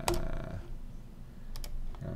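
Sharp clicks from computer input controls: one click just after the start, then a quick pair of clicks about one and a half seconds in.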